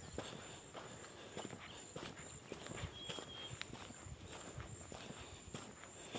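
Faint footsteps on a dirt road at about two steps a second.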